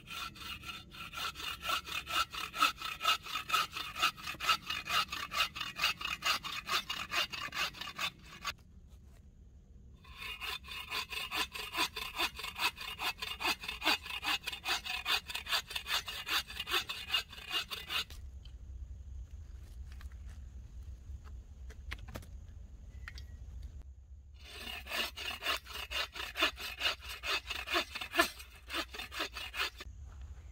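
Folding bow saw cutting through a fallen log with rapid back-and-forth strokes. It comes in three bouts, broken by a short pause about eight seconds in and a longer one from about eighteen to twenty-four seconds.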